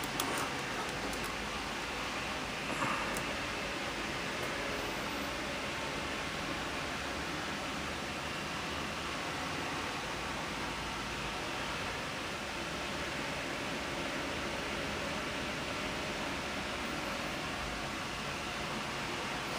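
Steady, even hiss of room noise, with one faint brief knock about three seconds in.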